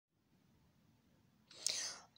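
Near silence, then about one and a half seconds in a short breathy hiss from a woman's voice, with no pitched sound in it, just before she begins to talk.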